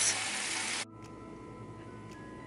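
Steady sizzling hiss from a lidded pot bubbling on an electric stovetop, cut off abruptly a little under a second in. Quiet room tone with a faint steady hum follows.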